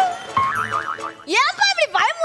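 Comic 'boing' sound effect with a wobbling pitch, followed about a second in by a louder warbling cry whose pitch slides sharply up and down.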